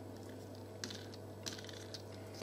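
Fingers picking through small felt circles and beads in a plastic tray, making a few faint light clicks, about three in two seconds.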